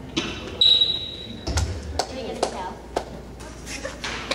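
Between-song stage noise with the band's gear being handled: a short, loud, high steady tone about half a second in, then scattered knocks and taps and a low thump, with voices murmuring underneath.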